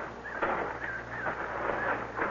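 Faint bird chirps, part of the outdoor background sound effects of a radio drama, over a low steady hum.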